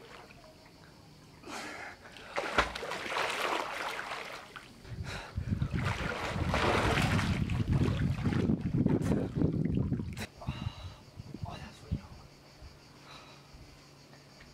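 Pool water splashing as a person swims and kicks at the surface, in irregular washes that are heaviest in the middle and die away near the end.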